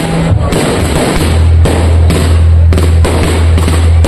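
Dense fireworks barrage: many launches and bursts in quick succession that overlap into a continuous string of bangs and crackles over a low rumble.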